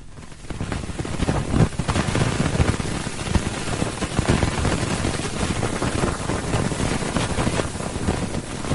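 Sonified solar wind: magnetic-field fluctuations from the Wind spacecraft's magnetometer, thousands of data samples played as audio. It is a dense rushing, crackling noise that comes up about half a second in. It sounds a bit like wind hitting a microphone, or like an old vinyl record with the stylus going round and round at the end.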